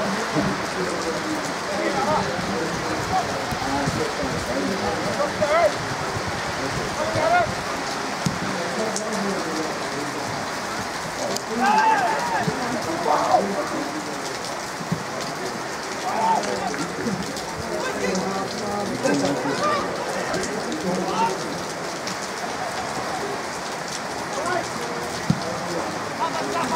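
Steady rain, with scattered voices calling out now and then above it.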